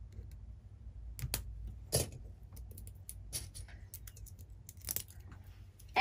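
Small plastic clicks and knocks of craft acrylic paint bottles being picked up and handled, scattered and irregular, the sharpest about two seconds in.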